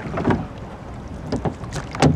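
Oars of a small rowing boat at work, giving a few short knocks and splashes with the strokes, over a steady rumble of wind on the microphone.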